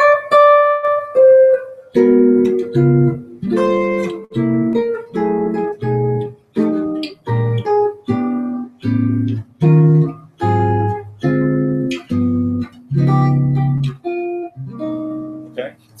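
Archtop jazz guitar playing a chord-melody passage: a few ringing melody notes, then about two seconds in a string of short, separated chords, roughly one and a half a second. The chords harmonize the melody with chromatic half-step ii–V changes.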